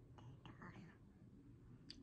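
Near silence: room tone, with a few faint breathy sounds in the first half-second or so.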